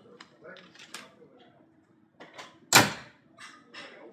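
Car hood being lowered and slammed shut on a 2013 Cadillac XTS: a few light knocks, then one loud bang just under three seconds in.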